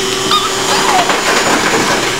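Steady hum of a handheld corded electric grooming tool's motor working on a small dog's foot, with a rougher, scratchier stretch in the middle as it works the paw.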